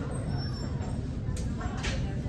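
Steady low rumble of indoor background noise, with two brief sharp sounds in the second half.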